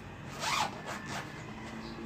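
Zipper on a fabric cosmetic makeup bag being pulled open in two quick strokes.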